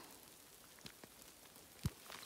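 Light rain falling, a faint steady patter with scattered drop ticks, and one short thump near the end.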